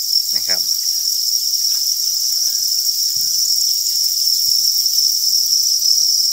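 A dense chorus of farmed crickets chirping without a break, heard as one steady high-pitched ring.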